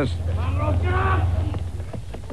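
A man's drawn-out shout rings out during a rough scuffle, over a steady low hum. Short knocks and scuffling follow near the end.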